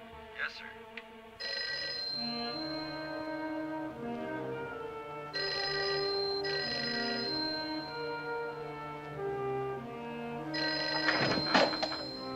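Telephone bell ringing in long repeated rings, three bursts each a couple of seconds long, over orchestral film-score music.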